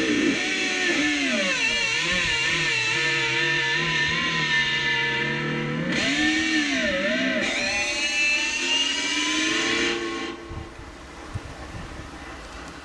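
Electric guitar playing a slow lead melody of long sustained notes, with wide string bends and vibrato. The playing stops about ten seconds in, leaving faint hiss and a few small clicks.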